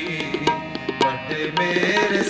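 Harmonium and tabla playing an instrumental interlude of Sikh kirtan. The harmonium holds steady reedy notes under regular tabla strokes, and the bass drum now and then slides in pitch.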